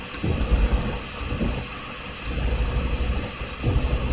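A computer keyboard being typed on and backspaced as a word is deleted and retyped, heard mostly as irregular dull low thumps.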